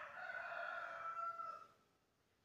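A bird's single long call, lasting about a second and a half at one steady pitch and falling off at the end.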